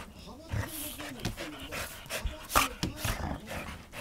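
Golden retrievers play-wrestling at close range: panting and short, sharp scuffling noises, the loudest about two and a half seconds in. A voice keeps talking in the background.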